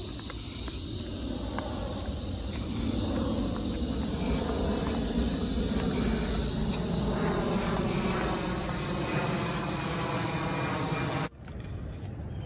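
A steady engine drone that grows louder about three seconds in and cuts off suddenly near the end.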